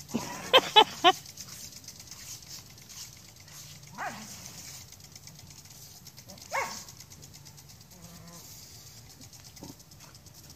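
Scottish Terrier barking at a lawn sprinkler: three quick, loud barks about half a second in, then single barks around four seconds and six and a half seconds, and fainter ones near the end.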